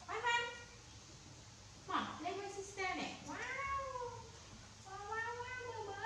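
Baby macaque giving high-pitched, meow-like cooing cries. A short call comes right at the start, a run of calls follows from about two seconds in, and another comes near the end. Each call rises and then falls in pitch.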